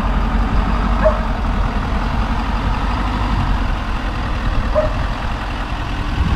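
Ford Super Duty dually pickup's engine running at idle, a steady low rumble.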